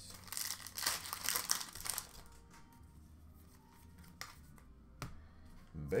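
Hockey card pack wrapper crinkling as it is torn open, loudest in the first two seconds. It is followed by a couple of light taps as the cards are handled.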